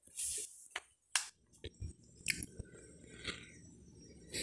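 Faint handling noise of a phone camera being moved in the hand: a brief rustle, then scattered sharp clicks and ticks.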